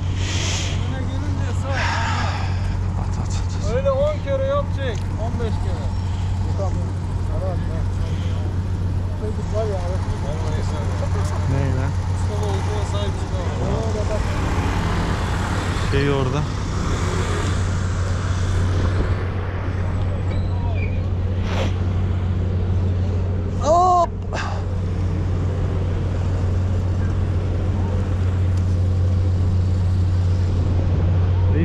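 A steady low engine drone, with people's voices faintly in the background and one short loud call about three-quarters of the way through.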